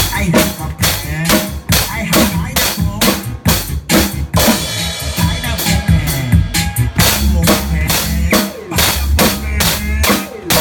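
Two drum kits played together in a steady rock beat: bass drum, snare and cymbals struck in quick regular strokes, with no break.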